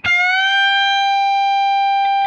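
Single electric guitar note on the high E string, an F at the 13th fret bent up a whole step to sound as G. The pitch rises quickly at the start, then holds steady.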